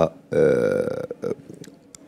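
A man's drawn-out hesitation vowel, a held "aah" lasting under a second in the middle of his speech, followed by a few short broken syllables and a brief pause.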